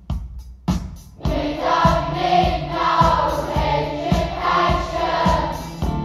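Recorded music played back over a pair of large floor-standing hi-fi loudspeakers: a few sharp struck or plucked notes with a deep bass, then from about a second in several voices singing together in held chords over a steady low pulse.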